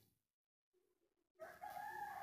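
Near silence, then about a second and a half in a faint rooster crow: one drawn-out call lasting close to a second.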